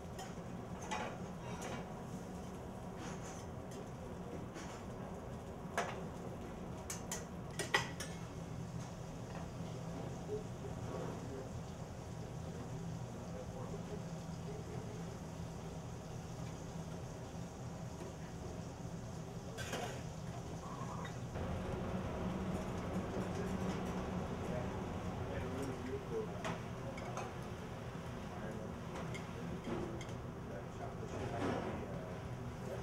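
Restaurant kitchen: metal pans and utensils clinking and clattering over a steady low hum, with a few sharp clinks in the first eight seconds.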